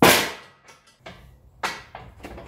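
Steel strongman yoke loaded with weight plates set down on a concrete floor: one loud sharp metal bang with a ringing decay, then lighter knocks and a clank about a second and a half in.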